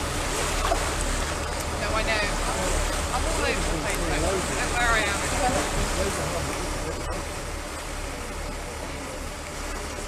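A boat at sea: a steady low rumble from the motor and wind on the microphone, under a hiss of water, with people talking in the background. The rumble eases slightly near the end.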